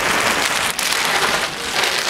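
Clear plastic garment bags crinkling and rustling steadily as gowns are pulled out of them.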